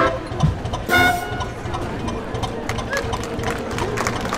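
Brass band's last notes: a short brass blast at the start and another about a second in, then the murmur of a crowd's voices with scattered claps.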